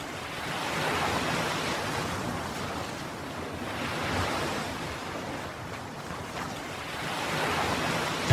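Small waves breaking and washing up on a sandy shore, the surf swelling and falling back about three times.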